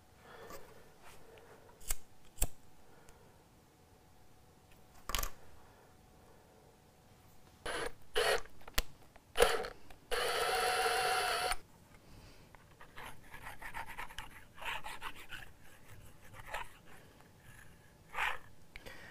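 Small sharp clicks, snips and handling noises of hand work on guitar wiring, with a steady buzzing noise for about a second and a half about ten seconds in.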